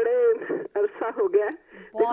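Speech only: a voice talking over a telephone line, thin and cut off above the middle range.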